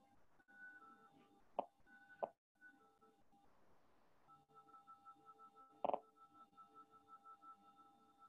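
Faint background music of quiet sustained tones, broken by a short gap near the middle. Three short sharp clicks stand out: two close together about a second and a half and two seconds in, and a louder one about six seconds in.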